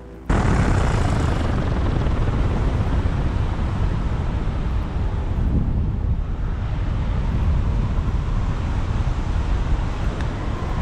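Paramotor in flight low over a field: loud, steady rushing of wind on the microphone, heaviest in the low range. It cuts in suddenly just after the start, and its hiss thins briefly around the middle.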